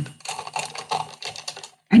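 Typing on a computer keyboard: a quick, irregular run of key clicks that lasts about a second and a half and then stops.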